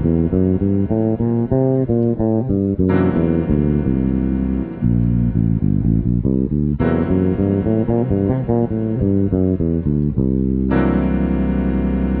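Bass guitar playing the Lydian-Mixolydian scale in runs up and down over a held C7 sharp-11 chord on a keyboard. The chord is re-struck three times, about every four seconds.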